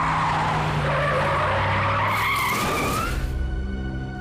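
Car tyres skidding and squealing in a car accident, the noise swelling about two seconds in and cutting off just after three seconds. Background music plays underneath and carries on after the skid.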